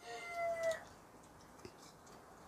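Rooster crowing: the end of one long crow, its held final note with a slight drop in pitch, ending under a second in.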